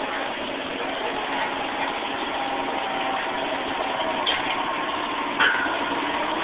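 Well-servicing rig machinery running steadily while hydraulic power tongs make up 5½-inch casing, with a sharp metallic clank about five and a half seconds in.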